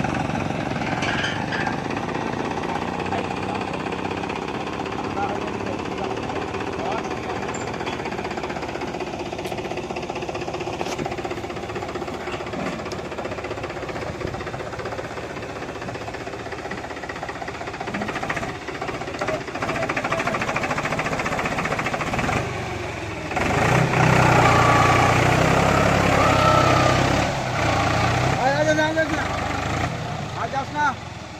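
Powertrac tractor's diesel engine running steadily in deep mud, growing louder for several seconds about three quarters of the way in, with men's voices over it.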